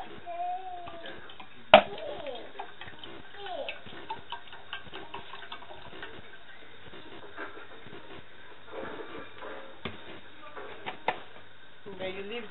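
Vegetable oil poured from a plastic bottle into an aluminium saucepan, with light ticking and small clicks throughout. A sharp click about two seconds in is the loudest sound, with two more clicks near the end, and faint voices in the background.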